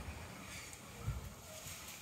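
Quiet background with no distinct sound, apart from a soft low thump about a second in.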